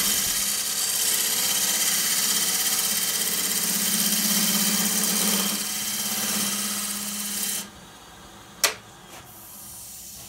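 Wood lathe running with a turning tool cutting the outside of a spinning segmented wooden bowl: a steady motor hum under a loud hiss of cutting. About seven and a half seconds in, the cutting hiss stops and the sound drops to a faint hum, with one sharp click about a second later.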